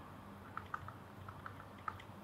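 Faint, irregular light clicks and taps of a stylus writing on a tablet, about half a dozen, the loudest near the end.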